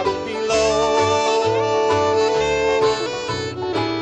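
Bluegrass band playing an instrumental break without singing: the fiddle carries the melody in long held notes over a bass walking between notes and guitar rhythm.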